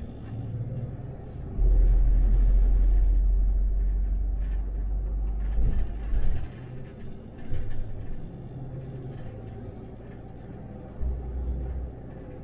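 Cab noise of an 18-metre MAN Lion's City articulated city bus gathering speed on an open road: a steady low rumble of drivetrain and tyres. A heavier low drone comes in about a second and a half in, fades out around six seconds, and returns briefly near the end.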